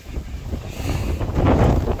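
Wind buffeting the microphone: a low, gusty rumble that gets louder about a second in.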